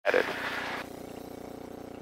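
A light aircraft's piston engine and propeller running steadily at idle, a low even drone in the cockpit. A brief cut-off voice opens it, lasting under a second.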